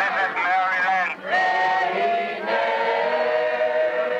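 Group of voices singing slow, long-held notes, with a short break about a second in and a new held note about two and a half seconds in.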